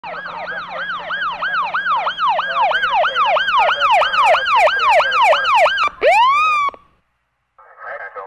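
Police car siren in fast yelp mode, about three rising-and-falling sweeps a second, switching about six seconds in to a single slower rising wail that cuts off abruptly. It is heard from inside the cruiser.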